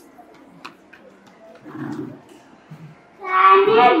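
Faint room murmur, then about three seconds in a child's voice comes in loud and drawn out through a microphone and PA.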